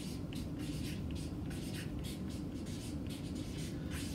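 Felt-tip marker writing on paper pinned to a wall, a quick, uneven run of short scratchy strokes as the letters of a word are drawn.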